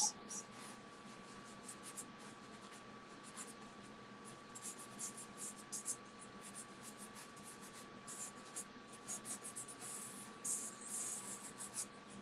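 Soft pastel sticks stroking and scratching across paper in many short, quick strokes, thickest in clusters in the second half. A faint steady high tone hums underneath.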